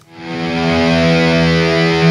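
Distorted electric guitar chord swelling in from quiet over about half a second, then held and sustained.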